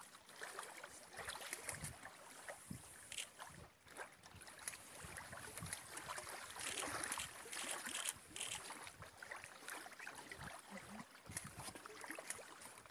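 Faint, steady water and wind noise from small waves lapping at a rocky lake shore, swelling a little past the middle.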